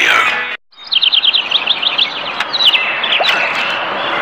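Bird chirping: a fast run of short, high, descending chirps, about nine a second, then slower scattered ones, over a steady hiss. At the start, the advert's voice and music cut off abruptly.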